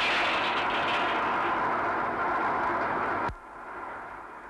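Loud, steady rush of gas venting from a pipe on an offshore gas rig. It starts suddenly and cuts off abruptly a little after three seconds.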